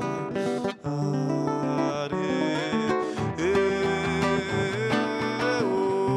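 Acoustic guitar playing a song, with a short break in the sound about a second in and a long held note coming in about halfway.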